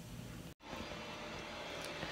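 Faint indoor room tone: a low steady hum under a soft hiss, cut off by a brief dropout about half a second in. After the dropout the hum returns, slightly higher in pitch.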